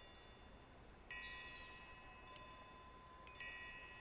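Faint metallic wind chime tinkling: clusters of high ringing tones struck about a second in and again near the end, each ringing on.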